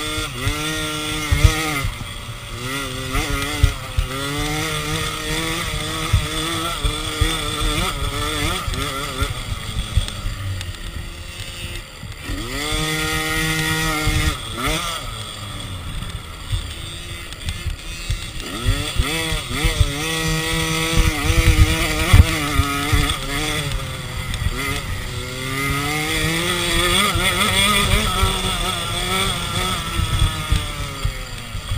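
A small automatic two-stroke motocross bike's engine heard on board as it is raced around a dirt track. Its pitch climbs and falls again and again as the throttle is opened and eased off through corners and jumps. Wind rush and knocks from the rough track are also heard.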